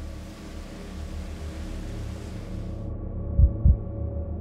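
Film sound design: a low drone swelling slowly, then the sound turns muffled as the high end drops away about three seconds in. Near the end a heartbeat effect starts, one double thump, lub-dub.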